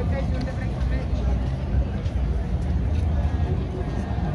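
Crowd of people walking and talking indistinctly, over a steady low rumble.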